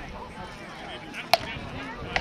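A single sharp crack of a rattan sword blow landing in armoured tournament combat, well over halfway in, over faint chatter of onlookers.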